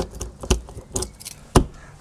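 Keys jangling and a key turning in the lock of an Auto-Trail Frontier motorhome's exterior locker door, giving a few sharp clicks; the loudest comes near the end. The lock is being turned to locked before the door is pushed shut.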